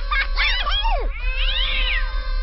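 Cat-like meowing cries over music: a few short falling meows in the first second, then one longer meow that rises and falls. A steady music drone holds underneath.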